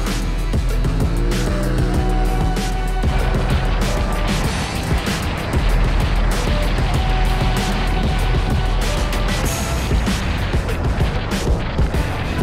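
Background music over a Polaris RZR Turbo S 4 side-by-side driven hard on a dirt course. Its engine rises and falls in pitch about a second in.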